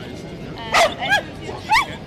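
A small dog barking three times in quick succession, with short, high-pitched yaps, over a background of crowd chatter.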